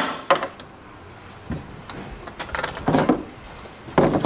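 Handling sounds: a sharp knock about a third of a second in, then faint rustling and soft bumps as a mesh filter bag is lowered by its strap into a suction tank.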